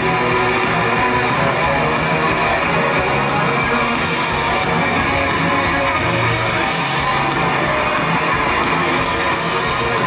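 Live band playing an instrumental passage with no vocals: electric guitar over drums and keyboards, with regular cymbal strokes and a steady, full mix.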